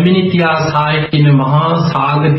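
A Buddhist monk chanting in a drawn-out, steady tone, breaking briefly about a second in.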